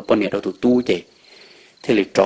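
Crickets chirping in a steady high trill, heard alone in a short pause about a second in, beneath a man telling a story.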